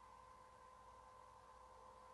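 Near silence: faint room tone with a thin, steady hum.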